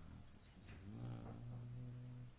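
A man's low, drawn-out 'hmm', held on one pitch for about a second and a half from about a second in.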